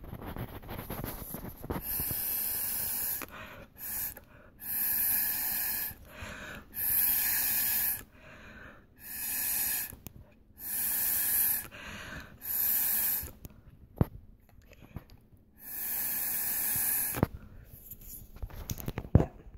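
A person blowing through a straw in about seven separate puffs, each a hissing rush of air about a second long, to push wet alcohol ink around and thin out a dense patch. One sharp click falls between the last two puffs.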